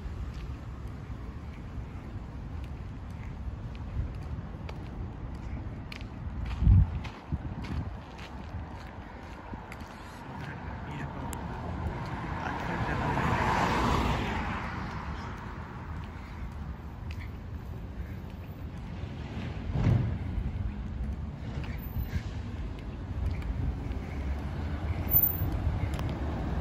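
Street sounds heard while walking: a steady low wind rumble on the microphone, with a car passing by that swells to a peak about halfway through and fades away. There are two short low thumps, one about a quarter of the way in and one about three quarters in.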